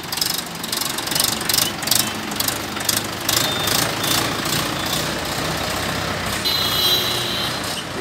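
Mahindra 585 DI tractor's four-cylinder diesel engine running steadily at low revs while the tractor is driven and turned. There is a short high-pitched squeal about six and a half seconds in.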